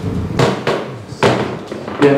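A few sharp knocks and clatters, about three, the loudest a little over a second in. They are handling noise close to a handheld microphone as a cardboard box of food is held out and passed around.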